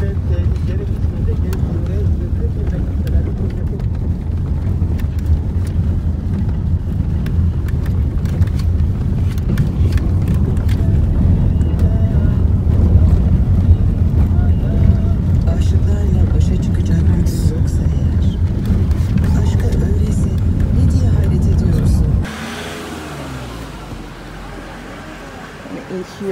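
Steady low road and engine rumble of a moving car, heard from inside the cabin. It cuts off suddenly about 22 seconds in, leaving quieter indoor room noise.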